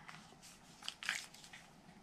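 Faint handling sounds of a small paper cut-out and a plastic liquid glue bottle on a craft mat: a few soft light ticks and rustles, mostly in the first half.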